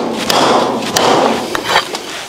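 Meat cleaver chopping through beef ribs on a thick wooden chopping block: a few heavy thuds about half a second apart.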